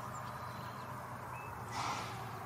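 Faint outdoor field ambience: a steady low hiss and hum, with one short high chirp about a second and a half in and a soft rustle near the end.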